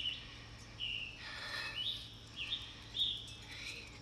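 A bird chirping: about half a dozen short, high chirps spread over a few seconds, some gliding slightly in pitch, over a faint steady background hum.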